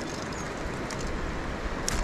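Steady rush of running creek water by a dam, with one sharp click near the end.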